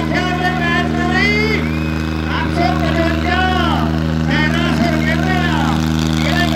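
Tractor diesel engines running at a steady speed, a constant low drone, with a loud voice calling out over it throughout.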